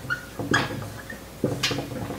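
Dry-erase marker squeaking on a whiteboard in a few short, separate strokes.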